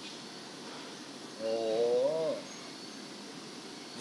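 A man's single drawn-out "oh" exclamation about a second and a half in, wavering and then falling in pitch, over a faint steady room hiss.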